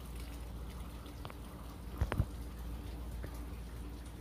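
Quiet room tone with a steady low hum and a few faint clicks, the loudest a short double knock about two seconds in.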